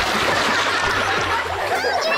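Big splash of a grown man falling into a swimming pool, then water spraying and churning around him.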